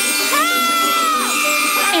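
Background music with a woman's high-pitched, held "ooh" of surprise, rising at the start and dropping away after about a second.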